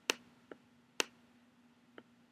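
Computer mouse clicking while a slider is adjusted: a handful of sharp clicks, two loud ones about a second apart with fainter ones between, over a faint steady low hum.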